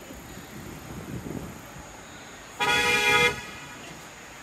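A taxi's car horn sounds in one blast of under a second, about two and a half seconds in, over the low rumble of city traffic.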